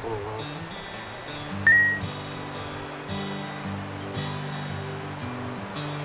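Background music of held, changing low notes, with a bright chime sound effect about two seconds in, over the steady rush of a river.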